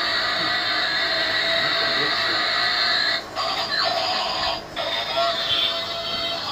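Battery-powered transforming robot-car toy playing its electronic tune and sound effects, a steady high-pitched electronic sound that cuts out briefly about three seconds in and again about a second and a half later.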